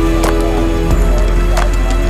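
Thin plastic bag and plastic water bottles crinkling and crackling as they are handled, in a string of sharp cracks. A steady droning tone runs underneath.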